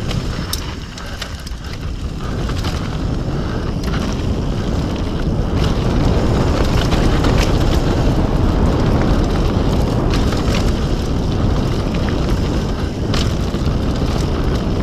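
Mountain bike descending a dirt and gravel trail at speed: wind rushing over the camera microphone and tyres rolling over the ground, growing louder over the first several seconds. A few sharp clicks and rattles from the bike come through it.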